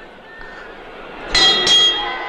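A metal bell struck twice in quick succession about 1.3 seconds in, its clear ringing tones carrying on afterwards. Before it there is only a low background.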